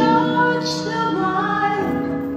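Recorded show music: a woman singing slow, held notes over sustained instrumental tones.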